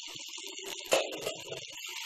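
Onion-tomato masala paste sizzling and spluttering in butter in an uncovered pan on medium heat, a steady hiss with small crackles. A brief knock about a second in.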